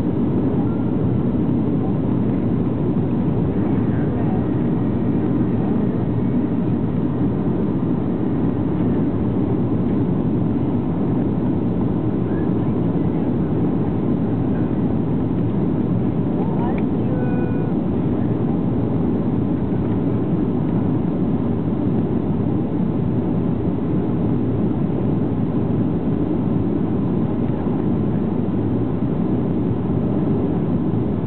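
Steady cabin noise inside a Boeing 737-700 on descent: an even rush of airflow and engine drone that does not change in level.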